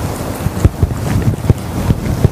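Microphone rumble: a steady rushing noise broken by irregular low thumps, several a second.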